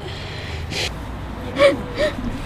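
A boy's acted crying: a sharp breath a little under a second in, then a short voiced sob near the end, the loudest sound here.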